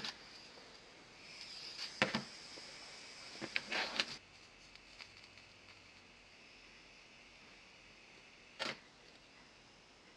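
Small tools and parts being handled on a workbench: a soldering iron, solder wire and a mini toggle switch being picked up and positioned. A few light clicks and knocks about two seconds in, a short rustling cluster around four seconds, and one more click late on, over faint steady hiss.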